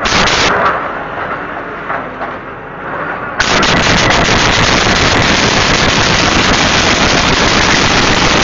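Excavator demolishing a two-story concrete building: a rumbling mix of crashes, then about three and a half seconds in a sudden, loud, continuous crackle of many sharp impacts as concrete breaks and rubble comes down.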